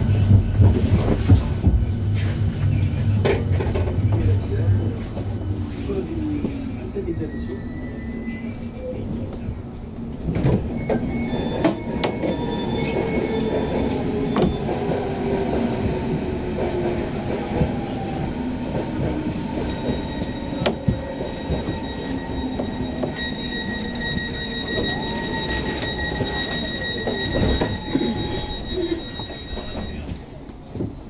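Berlin S-Bahn class 484 electric train heard from inside the passenger car as it brakes into a station. Its drive whine slides down in pitch as it slows to a stop, and a steady high whine holds in the last third while it stands at the platform.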